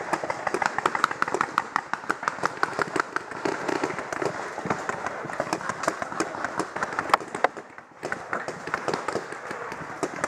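Paintball markers firing across the field in rapid, overlapping strings of shots: a dense, irregular crackle of sharp pops, several a second, that thins out briefly near the end before picking up again.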